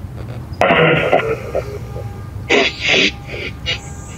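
Ghost-box speaker amp (a modified 'portal' speaker running noise-filtered spirit-box programs) putting out two short, choppy bursts of garbled, voice-like sound, about half a second in and about two and a half seconds in. The ghost hunters take them for a spirit voice saying 'please help me'.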